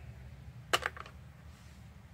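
Two short clicks about a quarter second apart, the first louder, from hands tapping or handling the recording phone, over a steady low rumble of room and handling noise.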